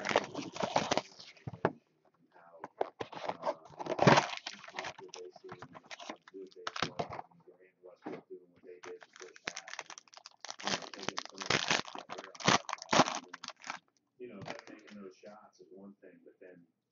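Foil wrapper of a trading-card pack crinkling and tearing open as it is handled, in irregular clusters of sharp crackles, then cards being handled.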